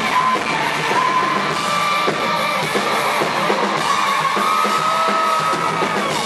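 Rock band playing live on stage, loud and steady, with electric guitars prominent, as heard by an audience member's camera in the hall.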